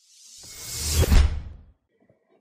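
Whoosh transition sound effect that swells over about a second, with a deep rumble underneath peaking just after a second in, then fades away.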